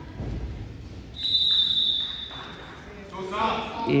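A single steady high tone lasting about a second and a half, the signal that ends the second period of the wrestling bout, preceded by soft thuds on the mat.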